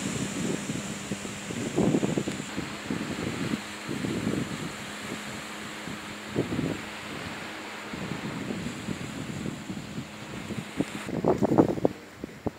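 Wind buffeting the microphone in irregular low gusts over a steady hiss, with the strongest gusts near the end.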